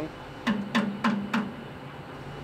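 Four quick knocks on metal, about a third of a second apart, each leaving a short low ring.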